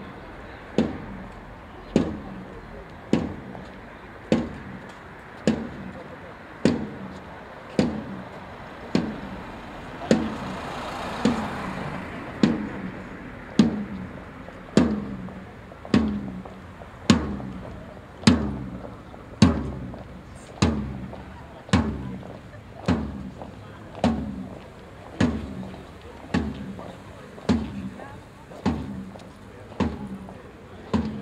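A drum struck in a slow, even beat, a little more than once a second, each stroke ringing briefly. Faint voices murmur underneath.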